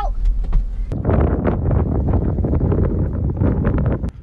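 Car interior rumble while driving, then about a second in, loud gusty wind buffeting the microphone.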